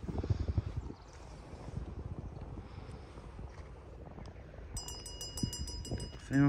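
A dressage judge's bell ringing in a quick run of metallic strikes near the end, signalling the rider to start the test. A brief low rumble comes in the first second.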